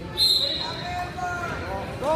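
A short, shrill referee's whistle blast about a quarter second in, starting the wrestling bout, followed by wrestling shoes squeaking repeatedly on the mat as the wrestlers move and lock up.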